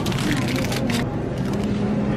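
Busy shop background noise: a steady hubbub of faint, indistinct voices, with a few light clicks and handling noises at a self-checkout in the first second.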